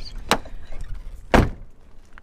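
Car bodywork being shut: a light knock, then about a second later a heavy, much louder slam.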